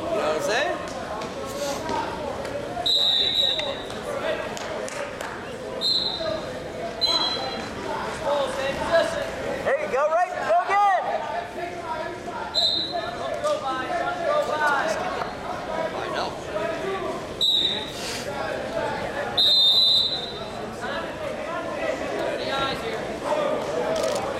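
Wrestling shoes squeaking on the mat in short, high chirps several times as the wrestlers move and hand-fight, over indistinct voices echoing in a large gym.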